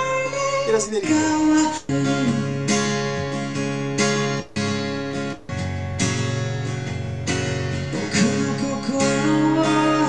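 Live acoustic rock performance: acoustic guitar strumming with a male lead voice singing, broken by sudden short cut-outs several times as playback jumps ahead through the song.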